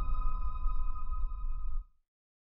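Tail of a channel logo sting: a sustained high ringing tone over a low rumble, dying away and cutting off shortly before the end.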